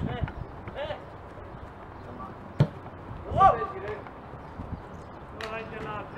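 Players' shouts on a football pitch, the loudest a short call about three and a half seconds in, with a football kicked once, a sharp thud a little before it.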